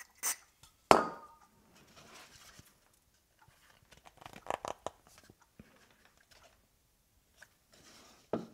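A brief hiss from an aerosol can of glue activator, then a sharp knock about a second in. A few seconds later come light knocks and rubbing as a turned wooden piece is handled.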